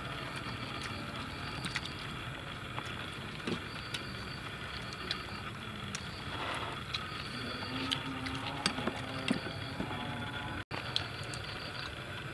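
A metal spoon clinking and scraping against a steel serving tray as grilled fish is picked apart: small scattered clicks over a steady background hum.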